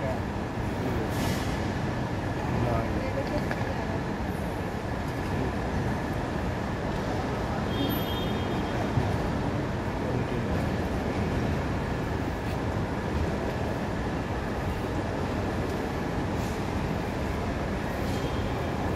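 Airport terminal hall ambience: a steady background of air-handling noise and distant voices, with a faint steady hum, and a few brief high beeps about eight seconds in.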